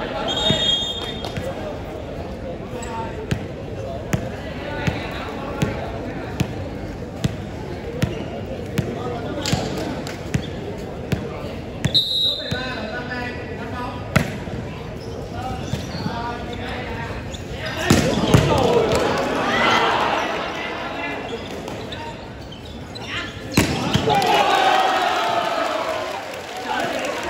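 A volleyball bounced repeatedly on a hard court floor, a sharp knock about every 0.8 s, over the chatter of a large crowd, ahead of a jump serve. Later the crowd breaks into loud cheering and shouting twice.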